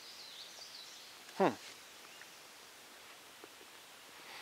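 Faint outdoor background hush, with a man's short "hmm" falling in pitch about a second and a half in.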